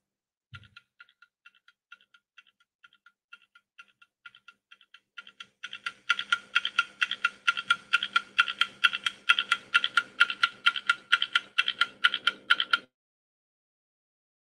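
Ticking countdown-timer sound effect: short, sharp ticks, faint and spaced out at first, then louder and quicker with a low hum underneath from about halfway, cutting off suddenly near the end.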